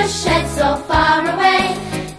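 Children's song: voices singing a melody line over a band accompaniment with a moving bass line.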